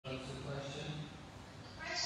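Speech: a voice talking just after an abrupt cut in the audio, with a short hiss near the end.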